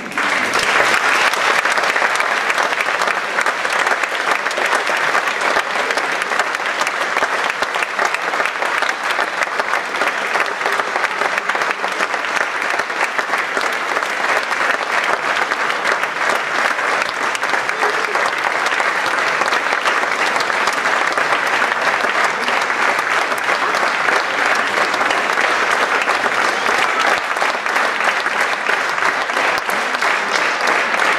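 Audience applauding, breaking out suddenly and keeping up at a steady, dense level.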